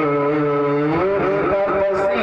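A man singing a naat into a microphone, holding a long drawn-out note that bends upward about halfway through and shifts again near the end.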